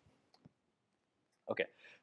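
A pause in the talk: near silence with two faint clicks in the first half second, then a man says "OK" near the end.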